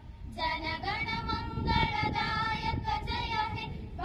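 A group of young voices singing a slow song together in unison, holding long notes, with a short pause for breath just after the start.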